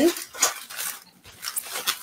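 Plastic bubble wrap crinkling and rustling as it is handled, a run of short crackles with a brief lull about a second in.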